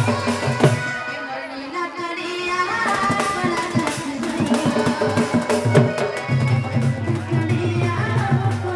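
Live folk music: a woman sings through a microphone over a hand-played barrel drum keeping a steady rhythm.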